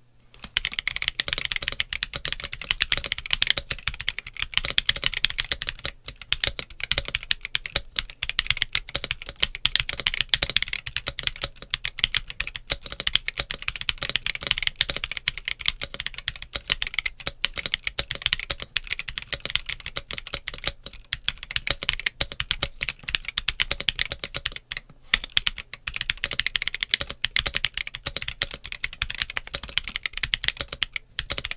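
Fast, continuous typing on a Monsgeek M1 mechanical keyboard with Gazzew U4T tactile switches in an FR4 plate and Akko ASA-profile keycaps. The case has had a force break mod, with the tape removed and the foam left in. The keystrokes run densely, with a couple of brief pauses.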